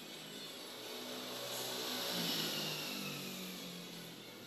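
A vehicle passing by: a swell of noise that peaks a little past the middle, its high whine falling in pitch as it goes by, over background music.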